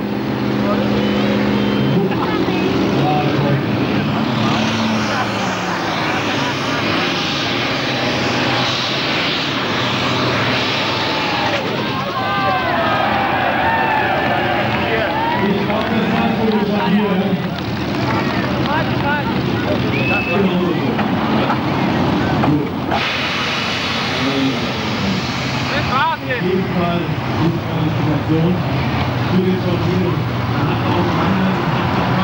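Diesel pulling tractor at full throttle under heavy load, pulling a weight sled down the track, with a loud, steady engine note.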